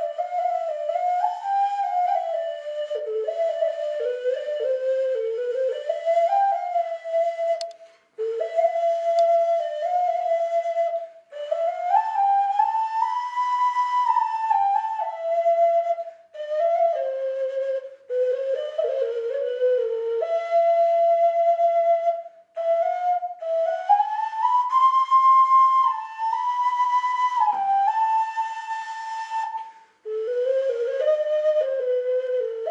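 A Kazakh clay ocarina (sazsyrnai), a small vessel flute held in cupped hands, playing a slow folk melody. The pure, flute-like tune moves stepwise through a narrow range, with long held notes, in phrases broken by short pauses for breath.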